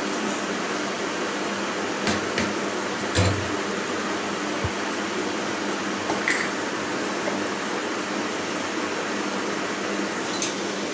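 Beef frying in a pan: a steady sizzling hiss. In the first half it is broken by a few clicks and knocks of a wooden spatula against the pan, the heaviest a dull knock a little after three seconds.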